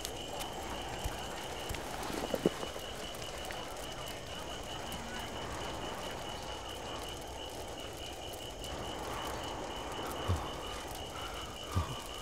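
Steady night-time ambience: a continuous, high, pulsing chirping chorus of night creatures, with a faint crackle of a campfire and a couple of soft knocks near the end.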